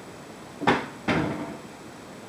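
Two sharp knocks about half a second apart, the second ringing on briefly: a kitchen cupboard door being shut.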